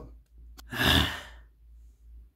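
A person sighing: one breathy exhalation of under a second, about halfway through.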